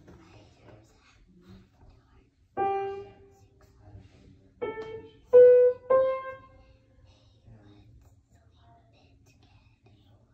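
Grand piano played by a young child. One note about two and a half seconds in, then three more in quick succession about two seconds later, each a little higher than the last, ringing out and fading.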